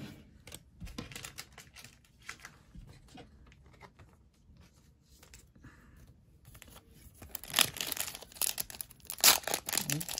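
Soft clicks of cards being handled and set down on a desk, then, from about seven seconds in, the foil wrapper of a Pokémon booster pack crinkling loudly and tearing open.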